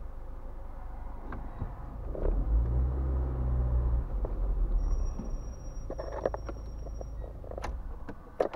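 Car engine and drive rumble heard from inside the cabin as the car moves off, strongest for a couple of seconds near the middle, followed by a run of light clicks in the second half.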